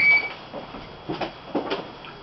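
A man's voice trails off, then a pause of low room noise with two brief soft sounds, about a second and a second and a half in.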